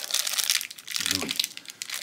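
Shiny black blind-bag wrapper crinkling and crackling as hands peel it open, with a brief bit of voice about a second in.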